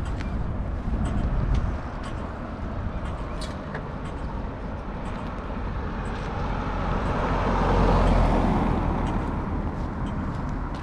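A car passing on the street: its tyre and engine noise swells, peaks about eight seconds in, then fades, over a steady low rumble of traffic.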